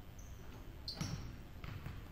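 Basketballs bouncing on a hardwood gym floor, with a hard bounce about a second in and more near the end, and a couple of brief high squeaks in between.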